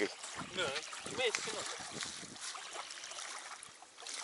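Faint talk in the first second or so, over a steady low background of small waves lapping at the pond shore.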